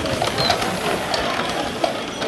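Antique wooden cart with large spoked wheels rattling and clattering as a Belgian draft horse pulls it along an asphalt street, with the clicks of hooves and loose load mixed in.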